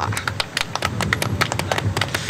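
Sheets of paper rustling close to the microphone: a quick run of irregular clicks and crackles over a low rumble.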